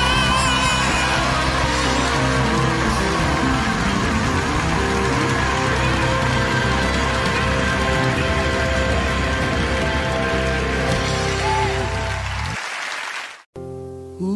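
Live gospel band playing out the end of a song with the audience applauding, the whole mix dense and loud; it stops abruptly about twelve and a half seconds in. After a moment of silence, the next gospel song begins softly near the end.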